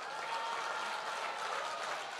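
A seated audience applauding: steady clapping from many hands.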